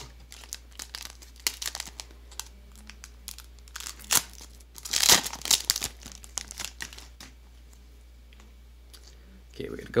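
Foil booster-pack wrapper of the Digimon Card Game crinkling as it is handled, then ripped open in a loud burst of tearing about five seconds in, followed by quieter rustling.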